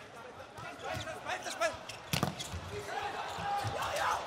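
Volleyball rally in an arena: the ball struck several times, with sharp hits, the loudest about two seconds in, over crowd noise and shouts.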